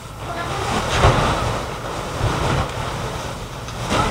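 A comforter and its cover being pushed, shaken and flapped, the fabric rustling and swishing, loudest about a second in.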